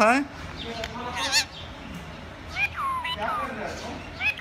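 A green parakeet making several short calls that slide in pitch: one about a second in, then a quick run of falling calls near the end.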